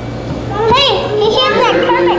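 High-pitched children's voices calling out in short rising-and-falling exclamations from about half a second in, over a steady low hum.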